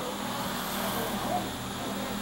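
Steady background hum and hiss with no distinct event.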